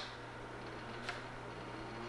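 Low, steady hum of the powered-up HP 9825 test setup, with one faint click about a second in.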